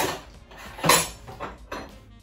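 Metal cutlery clattering in a kitchen drawer as it is rummaged through, with a few sharp clinking knocks about a second apart.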